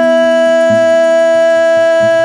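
Music: one long high note held steadily, over lower held notes and short repeated bass notes.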